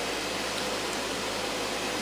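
Steady room noise: an even hiss with a faint low hum, and no distinct handling clicks.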